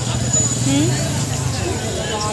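Street crowd talking over a motor vehicle engine running with a steady low drone.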